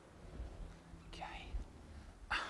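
A man quietly saying "okay" a little over a second in, over faint low-pitched background noise.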